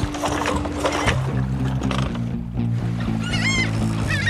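Background music with steady held low notes that change about a second in; near the end a gull calls a few times in short, arched cries.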